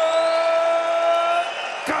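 A ring announcer's voice holding one long, steady note, the drawn-out end of the fighter's name 'Pedro', which cuts off about three quarters of the way through. Arena crowd noise runs underneath.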